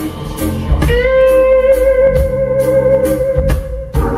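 Live blues band playing an instrumental passage: an electric guitar bends a note up about a second in and holds it for nearly three seconds, over bass and a steady drum beat.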